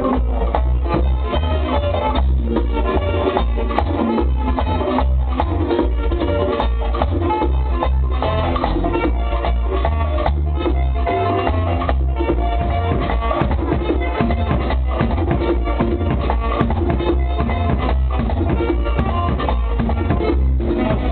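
A live merengue típico band playing a steady dance rhythm: button accordion over a two-headed tambora drum, congas and güira, with saxophone.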